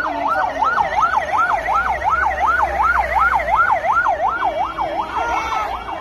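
Ambulance siren sounding a fast yelp, its pitch sweeping up and down about three times a second. The sweep breaks up briefly near the end.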